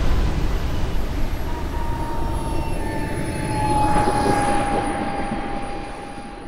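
Small model turbine jet engine (ACE x80, 80 N thrust) in a radio-controlled Global Aerojet T-33 running with a whine that slowly falls in pitch as the jet comes in to land. There is a louder swell of engine noise about four seconds in, and the sound fades near the end.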